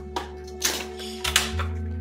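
Utility knife cutting into a charger's plastic packaging: a few short scraping noises, over background music with a steady bass.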